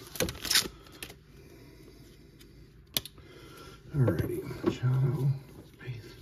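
Trading-card pack wrapper crinkling briefly as it is handled, then a quiet stretch broken by one sharp click about three seconds in. A man's voice murmurs near the end.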